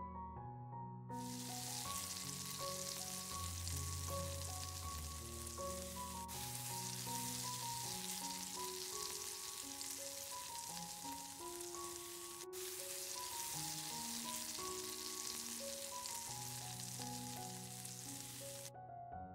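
Vegetable sticks and carrot sticks sizzling as they fry in a pan, the sizzle starting about a second in and running steadily, broken only by two split-second gaps. Soft background music plays underneath.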